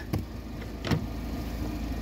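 Handling of the BMW X3's boot floor panel, giving a couple of light knocks, one near the start and one about a second in, over a steady low rumble.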